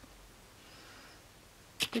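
Near silence: room tone with a faint soft hiss in the middle, then a woman's voice starts speaking near the end.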